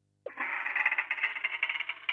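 Sound effect of a wooden door creaking open: one steady, grating creak that starts about a quarter of a second in and stops suddenly near the end.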